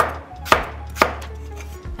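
Knife chopping raw potato into cubes on a wooden cutting board: three sharp, even strokes about half a second apart.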